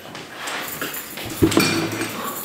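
People settling at a table: rustling, a chair being moved, and a sharp thump about one and a half seconds in.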